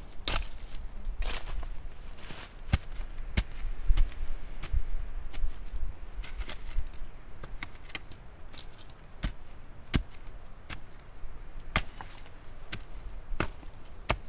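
A sharpened wooden digging stick jabbed repeatedly into the ground of a fire pit. It gives irregular sharp knocks, about one a second, as the point strikes the rock packed in the soil.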